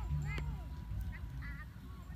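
Ducks calling: one strong quack about a third of a second in, then two or three shorter quacks about a second later.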